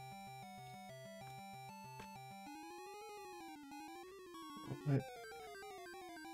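Faint background music in a video-game style: a bass rocking between two notes, then a melody that slides up and down in pitch.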